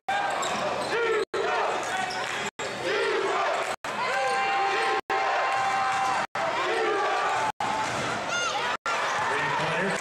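Live basketball game sound: a ball dribbling on the hardwood court, with short squeaks and voices across the arena. The audio drops out briefly about every second and a quarter.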